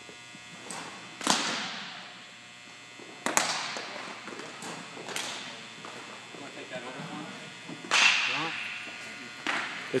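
Baseball pitches and return throws smacking into leather gloves: four sharp cracks a couple of seconds apart, each ringing on in the echo of a large gymnasium.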